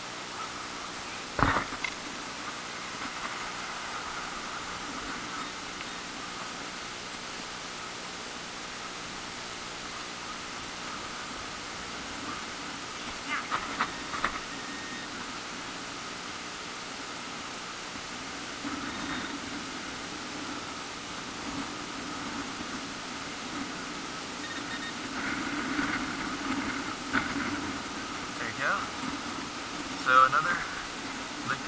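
Hands digging through loose beach sand for a metal-detector target over a steady background hiss, with a sharp knock about a second and a half in and a few short clicks near the middle.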